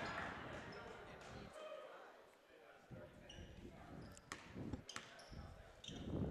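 Quiet gym ambience with a few basketball bounces on a hardwood court, mostly in the second half, and short high sneaker squeaks. Faint voices underneath.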